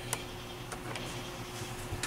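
Quiet room tone with a steady low hum and a few faint, soft ticks.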